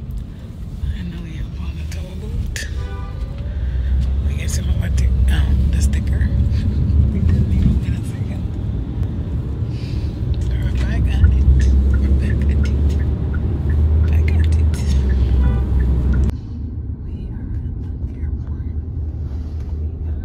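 Bass-heavy music with vocals, heard from inside a moving car over a steady road and engine rumble. About 16 seconds in the sound changes abruptly and the higher sounds fall away, leaving mostly the car's low rumble.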